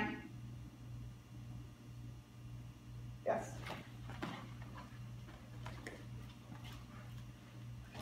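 Steady low hum, with short scuffling noises about three seconds in and again just after four seconds as a dog leaps for a wooden dumbbell.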